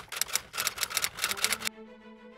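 Typewriter-style text sound effect: a fast, even run of key clicks, about eight a second, stopping shortly before the end, where soft music with held notes comes in.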